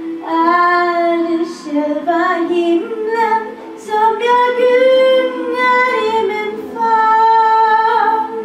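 A girl of about eleven singing a slow Swedish Christmas song into a handheld microphone, holding long notes in several phrases with brief breaths between them.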